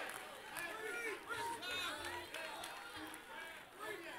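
Faint, overlapping voices of a congregation calling out responses.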